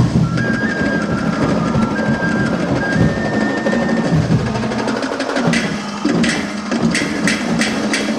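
Percussion-driven street-dance music, dense drumming with a thin high melody line over it for the first few seconds, then a run of sharp, crisp strikes near the end.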